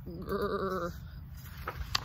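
A woman's voice giving one wobbling growl, "grrr", acting out a hungry bunny's rumbling tummy. Near the end comes the crisp snap of a picture-book page being turned.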